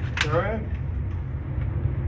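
Steady low rumble of an indoor shooting range's ventilation, with a brief spoken word at the very start.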